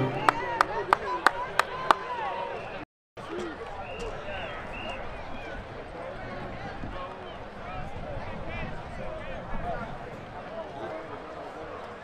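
About six sharp hand claps, roughly three a second, then a brief dropout. After it comes the steady chatter of a crowd, many voices overlapping.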